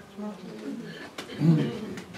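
A person's low, hesitant voice murmuring without clear words, with a louder low hum, like an "mm", about one and a half seconds in.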